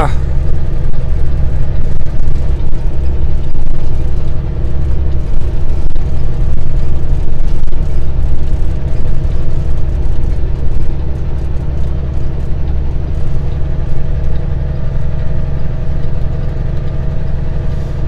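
Semi truck's diesel engine pulling a load up a long grade, heard from inside the cab: a loud, steady low drone that eases a little about two-thirds of the way through.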